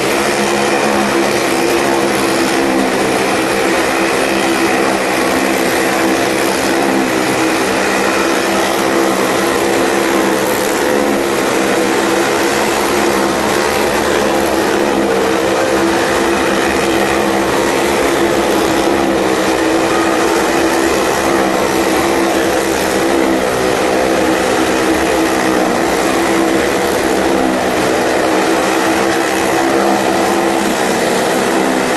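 Several motorcycle engines running loud and steady without a break, held at a constant high speed as the riders circle the vertical wooden wall of a well-of-death drum.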